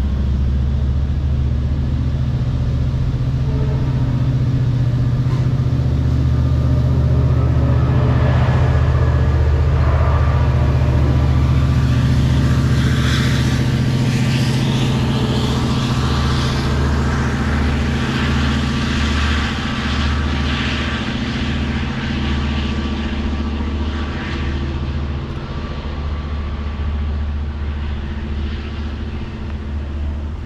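LIRR diesel passenger train pulling out: a steady low diesel engine drone under wheel-on-rail rolling noise and intermittent clicks. Loudest about a third of the way in, then fading as the train moves away.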